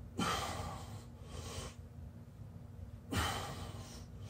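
Heavy breathing of a man straining to hold a headstand: two strong, forceful exhales about three seconds apart, with a softer breath in between.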